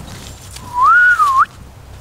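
A short whistled note of under a second, clear and single-pitched: it rises, dips back down, then sweeps up sharply before cutting off.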